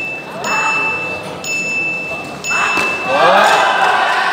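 A steady high electronic tone that pulses about once a second sounds in a large hall. About three seconds in, loud voices shout as the two fighters close in an exchange.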